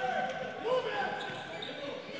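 Game sounds from a basketball court, faint with no crowd noise: a ball bouncing and short sneaker squeals on the hardwood floor.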